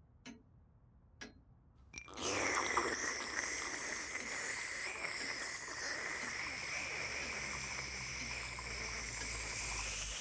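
A long, steady cartoon slurp of coffee from a cup, starting about two seconds in and held for some eight seconds before it cuts off, after a few faint clicks.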